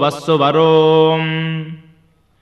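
Sanskrit Vedic mantra chanted by a single voice, drawing out a long held syllable that fades away shortly before the end.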